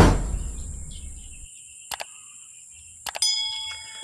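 A whoosh transition sound effect at the start, fading over about a second, over faint outdoor chirping. Near the end come sharp mouse-click sound effects and a ringing bell chime from a subscribe-button animation.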